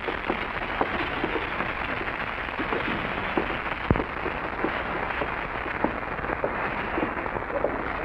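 Steady hiss and crackle of an old radio broadcast recording, with faint scattered clicks and one sharper click about halfway through.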